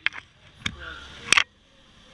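Close handling noise: a few sharp knocks and rustles as a wallet, phone and banknotes are handled right by the microphone, the loudest knock a little past the middle.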